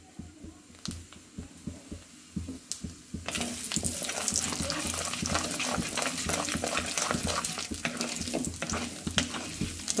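Hot sesame oil in a clay pot, first with a few faint ticks, then from about three seconds in a loud sizzling and crackling as tempering seeds go in. A wooden spatula stirs the seeds through the oil.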